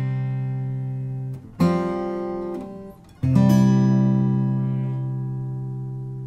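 Gibson J-45 Rosewood acoustic guitar. A chord rings at the start, a new chord is strummed about a second and a half in, and a last chord is strummed a little after three seconds and left to ring, slowly fading.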